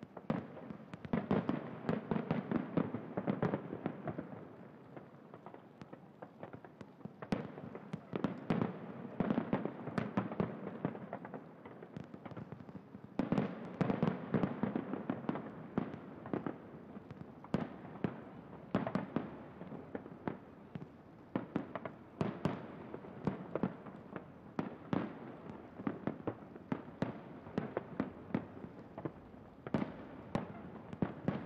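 A fireworks display: a rapid barrage of bangs and crackles that swells into heavier volleys every few seconds.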